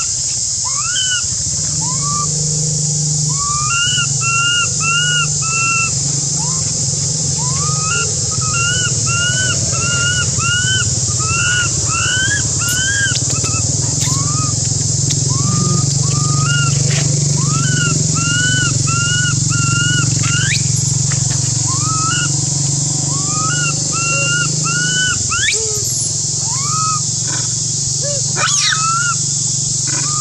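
Baby macaque crying: short, repeated rising-and-falling calls, often in quick runs of three or four, the distress cries of an infant on its own. Behind them run a steady high hiss and a low steady hum.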